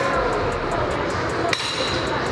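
A single metallic clank with a short ringing tail about one and a half seconds in: gym weight plates striking, over steady gym background noise.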